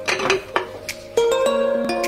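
Sliced kiwi tipped from a bowl into a glass blender jar: a brief soft rush with a few clinks against the glass. A little over a second in, background music starts and carries on.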